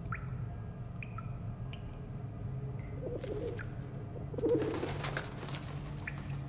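Pigeon cooing twice, a short warbling call about halfway through and a second, louder one soon after, over a low steady hum.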